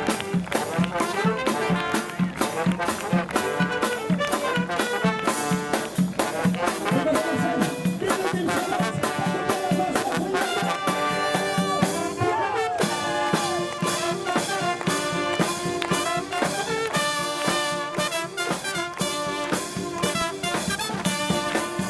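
Live xaranga street brass band playing: saxophones, trumpet, trombone and tuba over a bass drum and snare drum keeping a steady, driving beat.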